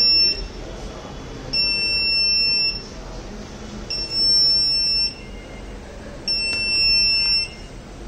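The smart helmet's alarm buzzer sounds a high-pitched beep about a second long, repeating every couple of seconds. It is the audible alert for abnormally high humidity picked up by the helmet's DHT11 sensor.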